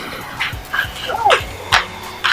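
A dog gives one short rising-and-falling yelp about halfway through, over soft clicks about twice a second.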